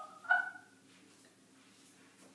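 A woman's short excited squeal, a brief pitched vocal sound with no words, in the first half-second, then quiet room tone.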